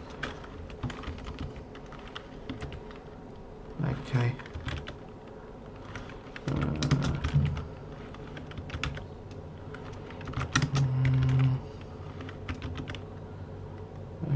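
Typing on a computer keyboard: irregular runs of key clicks with short pauses, as commands are typed at a terminal. A few brief low hums or murmurs from a person's voice come in between the runs.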